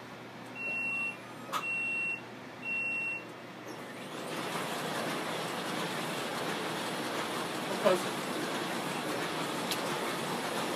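Heidelberg Quickmaster DI printing press giving three short, evenly spaced warning beeps, then starting to run about four seconds in with a steady mechanical noise.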